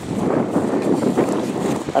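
Wind buffeting the microphone: a rough, irregular rushing that starts suddenly and stays fairly loud.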